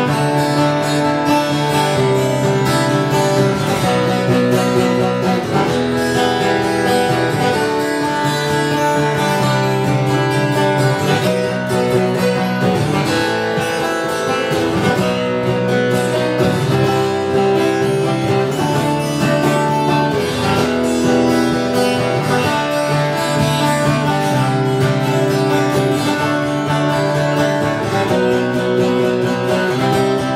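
A six-string and a twelve-string acoustic guitar strumming chords together in an instrumental passage, with no singing.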